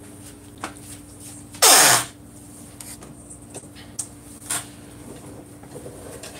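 A person's short, loud breathy sound about two seconds in, falling in pitch, with a few faint clicks over a steady low hum.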